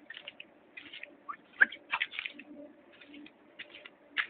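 Terns calling: a string of short, quick calls, several overlapping, loudest around the middle.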